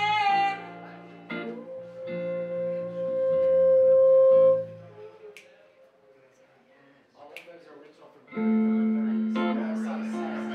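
Live electric guitar and electric bass with a woman singing: a sung phrase, then one long held note. The playing drops to a quiet, sparse passage midway, and guitar and bass come back in strongly near the end.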